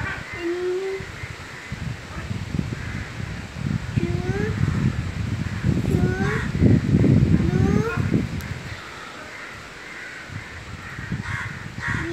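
Crows cawing, short rising calls repeated every second or two over a low rumbling noise that is loudest about six to eight seconds in.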